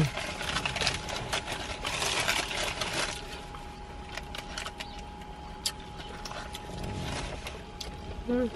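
Crinkling and crackling of a small plastic jelly packet and a paper food wrapper being handled, thickest in the first three seconds, then scattered single clicks.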